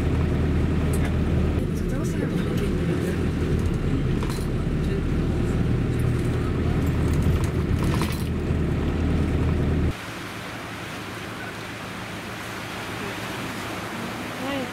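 Steady low outdoor rumble with a few light clicks, which cuts off abruptly about ten seconds in, leaving a quieter, even background noise.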